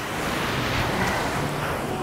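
Ocean surf: a wave breaking and washing up the sand, a steady rush that swells through the first second and eases toward the end.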